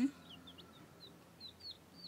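Young domestic chicks peeping quietly: a scatter of short, high peeps, each falling in pitch, several a second.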